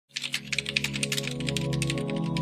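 Computer-keyboard typing, a rapid run of key clicks, over a steady synth music bed.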